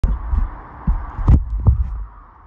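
Low rumble and thumps on the phone's microphone, typical of the phone being handled or buffeted right after recording starts, with a click at the very start and three heavier thumps in the second half.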